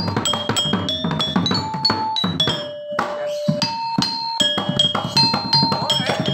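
Balinese gangsa, its metal keys struck one after another with a wooden mallet, ringing out a quick melody of clear pitched notes, with a brief lull about three seconds in.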